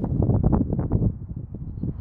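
Wind buffeting a phone's microphone, an uneven low rumble that eases off in the second half.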